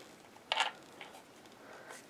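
Small handling sounds as a tiny router bit is fitted into the collet of a compact quarter-inch trim router, with one short scrape about half a second in; otherwise quiet.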